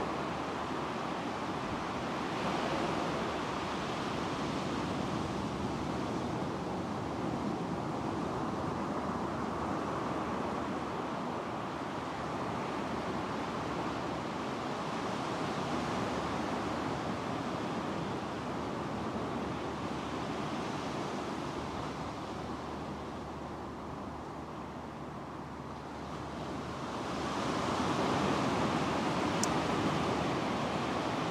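Ocean surf washing onto a sandy beach: a steady rushing noise that swells and ebbs in slow surges, growing louder near the end.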